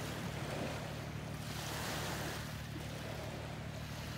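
Steady wash of sea water and wind on the microphone, over a low steady hum.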